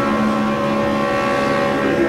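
Riverboat steam whistle sounding one long, steady blast.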